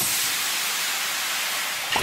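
Steady fizzing hiss from a logo-sting sound effect, like a carbonated soda fizzing. It starts suddenly and stops just before the end.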